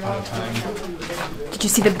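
Speech only: voices repeating "build them" in a playful, sing-song chant in a small echoing room.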